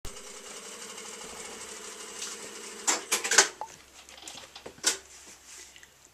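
Sharp metal clanks from a foot-operated grommet die setter (kick press) working: a quick cluster of three or four strokes about three seconds in and a single stroke near five seconds. A steady machine hum runs under the first half.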